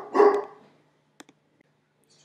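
A dog barking, the last bark just at the start, then the sound cuts off abruptly where the recording was paused, leaving only a faint click.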